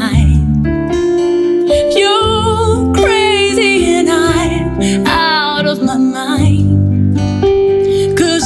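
A woman singing a ballad live, holding long notes with vibrato, over acoustic guitar accompaniment.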